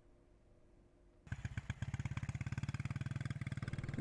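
Near silence for about the first second, then a motorcycle engine running steadily with a rapid, even beat.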